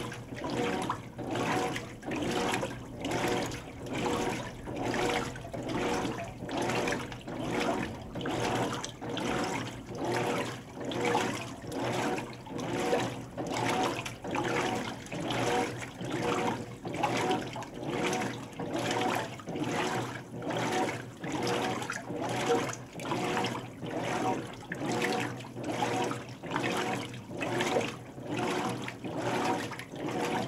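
Hotpoint HTW240ASKWS top-load washer in its rinse agitation: water sloshing in the tub in regular surges, about one a second, as the agitator strokes back and forth, with a steady hum underneath.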